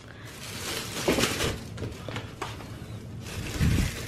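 Thin plastic freezer bag crinkling and rustling as it is handled and filled with raw meat, with a low thud near the end.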